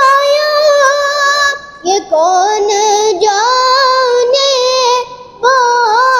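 A boy singing a naat solo without accompaniment, in long held notes with ornamented wavers in pitch. He pauses briefly for breath twice, about a second and a half in and about five seconds in.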